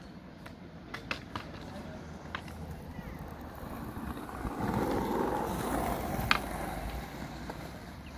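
Skateboard wheels rolling on concrete, swelling louder past the middle as a board rolls close, with a few sharp clacks of a board, the loudest about six seconds in.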